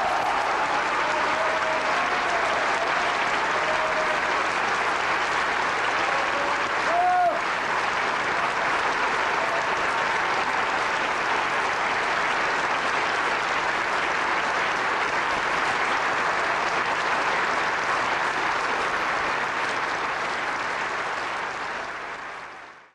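Large theatre audience applauding steadily, with a few voices calling out over the clapping in the first several seconds.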